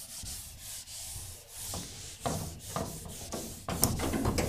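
Handheld whiteboard eraser rubbing marker writing off a whiteboard in repeated back-and-forth wiping strokes, the strokes coming more distinctly in the second half.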